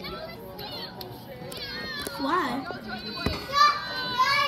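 Children's voices, high-pitched talking and calling out that grows busier in the second half, with a single sharp knock about three seconds in.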